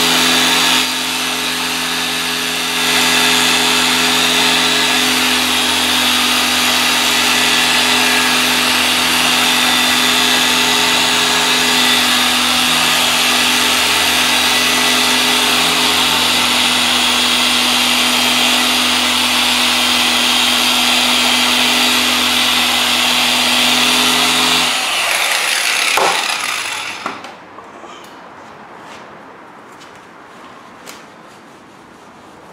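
Harbor Freight dual-action polisher running at speed 5, a 4-inch orange foam pad with cutting compound working scratches out of car paint. It runs steadily, a little quieter for the first few seconds, and shuts off and spins down about 25 seconds in.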